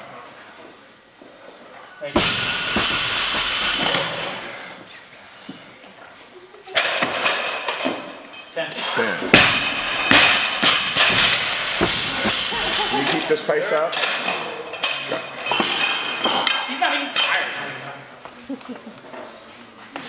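Barbells and bumper plates being handled and set down in a weightlifting gym: a sudden clang about two seconds in, another near seven seconds, then a busy run of metal clanks and knocks with ringing from about nine to thirteen seconds.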